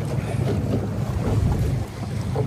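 Wind buffeting the microphone over the wash of choppy water against a gondola's hull as it is rowed, an even noisy rush with most of its weight low down.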